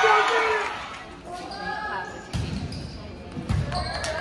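Volleyball rally on a hardwood gym court: two dull thumps of ball and play, a little over a second apart in the second half, with spectators' voices and a shout at the start.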